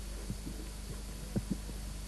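A steady low hum with a few faint, soft knocks scattered through it, two of them close together about a second and a half in.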